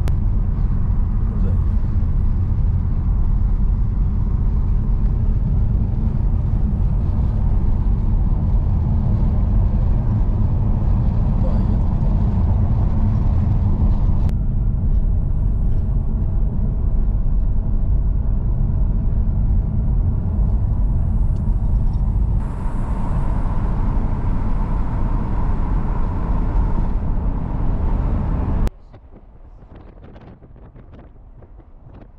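Steady low road and engine rumble heard inside a moving car's cabin. Shortly before the end it drops suddenly to a much quieter level.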